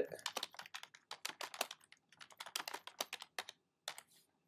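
Typing on a computer keyboard: a quick, uneven run of key clicks as a short line of text is entered.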